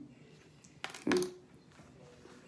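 A single sharp click of plastic Lego pieces being pressed together, followed just after by a short hummed "hmm", which is the loudest sound.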